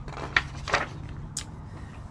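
A page of a large picture book being turned by hand: paper rustling, with a few short crackles over the first second and a half, above a faint low steady hum.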